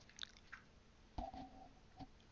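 Faint mouth noises and small clicks close to a headset microphone, with one brief, slightly louder mouth sound a little over a second in.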